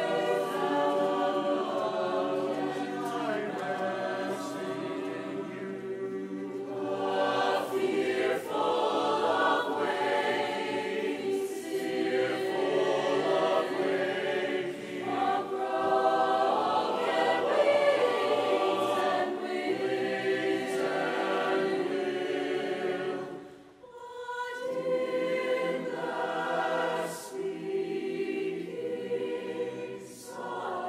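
Mixed choir singing in parts, sustained chords moving from phrase to phrase, with a brief break between phrases about three-quarters of the way through.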